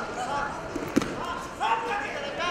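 Spectators and coaches shouting across a large arena hall, several voices overlapping, with one sharp thump about a second in and a loud shout just after.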